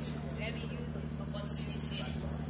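Public-address system humming steadily in the pause between speakers, with a few faint small clicks.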